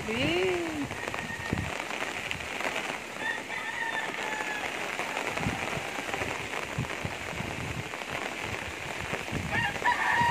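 Steady typhoon rain and wind: an even hiss with scattered taps of drops. Faint, thin, higher calls come through a few seconds in.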